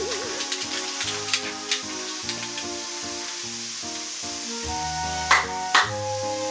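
Background music with a stepping melody, and near the end two sharp hand claps about half a second apart: the two claps of a Shinto shrine prayer.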